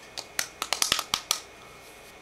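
A quick, irregular run of about ten light, sharp taps and clicks over about a second, from fingertips patting and rubbing liquid foundation onto the face.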